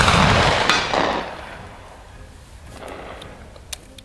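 The reverberating tail of a Martini-Henry rifle's black-powder shot rolling around the valley, dying away over about two seconds with a second swell about a second in. A single sharp click comes near the end.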